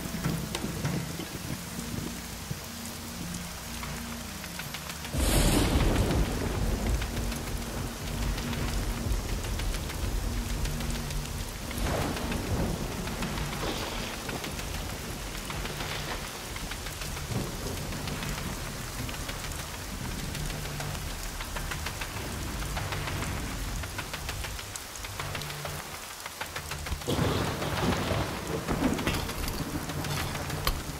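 Heavy rain pouring steadily, with rolling thunder and a loud thunderclap about five seconds in.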